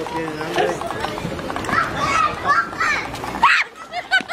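Several people's voices, children's among them, chattering and squealing excitedly over one another, with a few high shrieks about three and a half seconds in.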